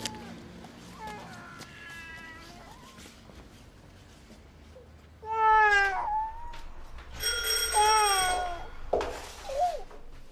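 A baby crying in a pram, in loud, falling wails: an infant running a temperature after his vaccinations. About seven seconds in, a doorbell rings over the crying.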